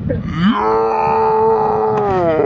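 A cliff jumper's long, steady yell as he drops toward the sea, held on one pitch for over a second after a brief rise at the start.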